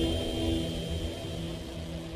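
Fading tail of a subscribe-button animation's sound effect: a low rumble with a few steady held tones, slowly dying away.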